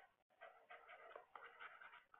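Faint scratching of a stylus writing on a tablet screen, in short irregular strokes, with a brief break just after the start.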